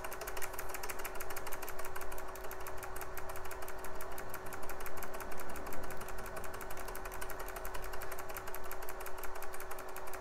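A key on a clicky desktop keyboard tapped rapidly and evenly over and over, the usual way of trying to catch a PC's BIOS setup prompt during boot, over a steady hum.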